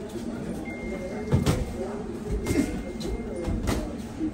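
Boxing gloves landing during sparring: three sharp smacks roughly a second apart, over the background murmur of a gym.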